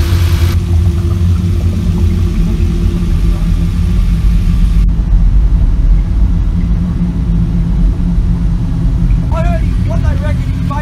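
Vehicle ferry's engine and drive running, a loud steady low rumble, with a brief voice near the end.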